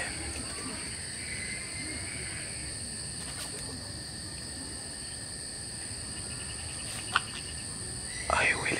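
Night insects, crickets among them, chirring steadily in even high tones. A single sharp click comes about seven seconds in.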